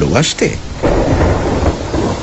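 Rain-and-thunder sound effect: a low rumble of thunder over steady rain starts about a second in.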